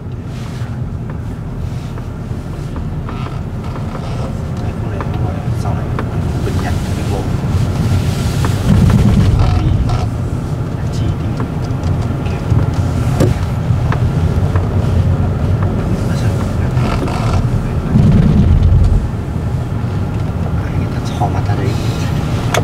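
Steady low rumble of wind on the microphone and road noise while travelling along a street, with two louder surges of rumble about nine and eighteen seconds in.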